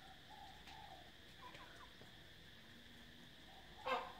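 Faint outdoor ambience: a steady high insect buzz with a few short, faint bird calls. A brief, louder sound comes just before the end.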